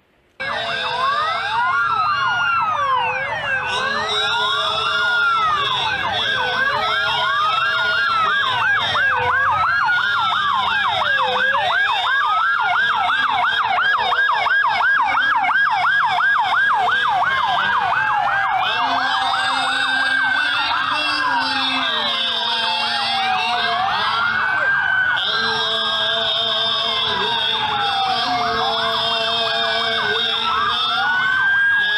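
Several police sirens sounding together, starting suddenly about half a second in. Overlapping wails rise and fall every couple of seconds, with a higher fast warble cutting in and out.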